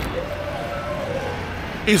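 City street background at night: a low, steady traffic rumble with a faint, even hum that fades just before the end.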